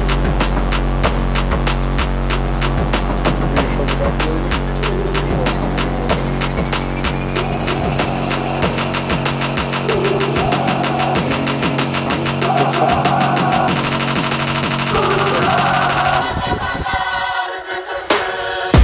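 Background electronic music building up: a fast, regular drum pattern over held bass notes, with a slowly rising sweep. The bass drops out near the end.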